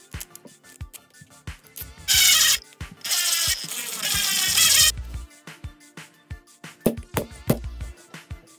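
A hex driver threading a screw into a plastic RC axle housing: a loud scraping rasp in two stretches, a short one about two seconds in and a longer one ending around five seconds, over background music with a beat.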